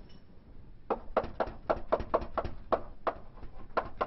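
Chalk knocking against a blackboard while writing: an irregular run of sharp taps, about four a second, starting about a second in.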